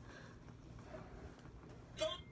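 Very quiet room tone with a faint steady low hum; no distinct sound stands out.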